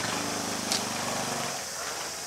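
Small motorbike engine running at low speed, a steady hum that fades away after about a second and a half, with one short tick in the middle.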